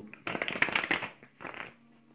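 Tarot cards being shuffled by hand: a rapid, dense flutter of card-edge clicks lasting about a second and a half, then stopping.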